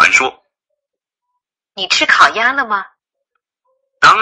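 Speech only: a voice speaking two short phrases, with silent pauses between them.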